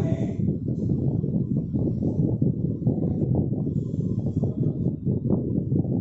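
Steady low rumbling background noise, like wind on the microphone, with a few faint scratches of a marker writing on a whiteboard.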